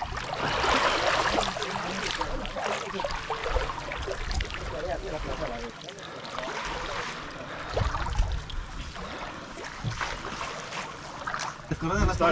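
Shallow, muddy river water sloshing and splashing as a seine net is dragged through it by people wading. The water noise is louder for the first couple of seconds and dips about halfway through.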